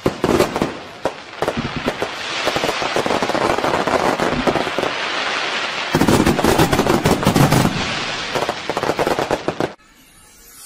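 Fireworks bursting and crackling over a steady hiss, with a rapid volley of bangs a little past halfway. The bangs stop suddenly just before the end.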